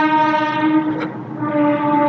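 A loud horn sounds one long steady note. It cuts off about a second in and sounds again shortly after.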